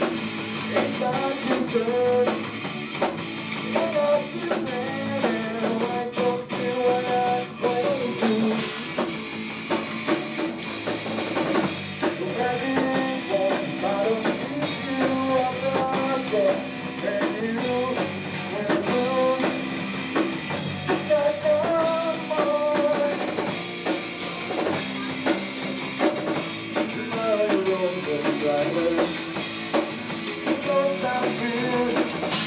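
Three-piece rock band playing live: electric guitar, bass guitar and drum kit, with the guitarist singing into the microphone.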